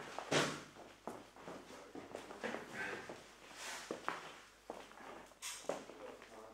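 Irregular footsteps and rustling on foil-faced underfloor-heating insulation boards, with a few sharper bursts about a third of a second in, around three and a half seconds and near the end.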